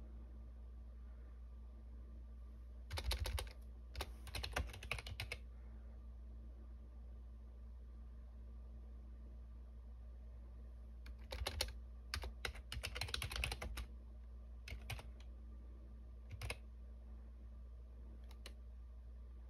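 Typing on a Logitech computer keyboard in short bursts: two quick runs of keystrokes a few seconds in, a longer run past the middle, then a few single clicks.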